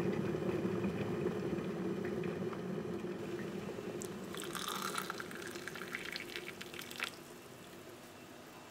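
Water in an electric kettle rumbling near the boil, the rumble slowly fading. From about four seconds in, a metal spoon clicks and scrapes in a ceramic cup as sugar is stirred into black coffee.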